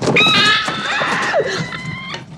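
A piercing, high-pitched scream from a film soundtrack, held for about two seconds and cut off suddenly, with a second wavering cry falling in pitch beneath it in the middle.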